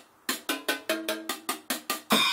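Sticks playing a quick run on the Red Dragon drum set, a portable kit of cymbals, drums and metal percussion: about six or seven strikes a second with ringing pitched notes, starting after a brief pause.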